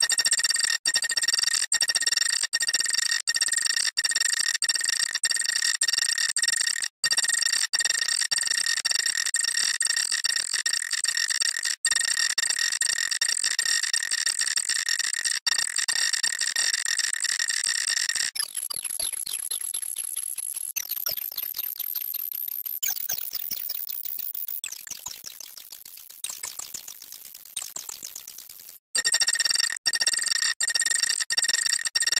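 Nokia phone startup jingle, heavily distorted by stacked audio effects and sped up: a harsh, steady cluster of high tones broken by frequent brief cutouts. After about 18 seconds it turns into rapid sweeping pitch glides and piercing high whistles that fade near the end.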